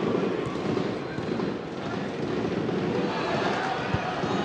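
Football stadium crowd noise, a steady, dense mass of fans' voices. A short low thud near the end comes as a shot is struck.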